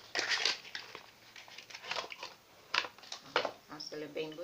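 Cardboard perfume box being opened and handled, with the bottle slid out: a burst of rustling and scraping in the first half-second, then a few shorter scrapes and knocks.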